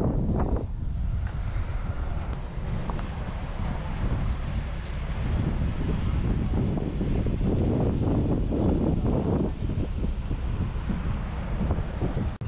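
Wind buffeting the microphone, a steady low rumble, over the wash of inlet water, with passing motorboats faintly mixed in.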